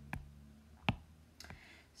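Two sharp clicks about three quarters of a second apart, the second the louder, over a faint low steady hum.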